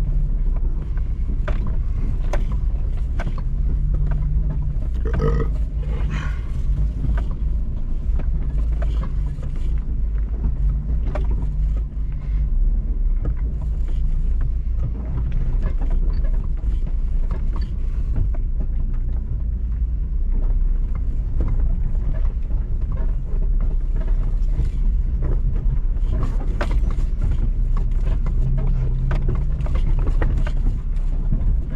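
Off-road vehicle engine running at low speed while crawling over a rocky trail, heard from inside the cab as a steady low drone, with frequent short clicks and knocks from rocks under the tyres and the body rattling.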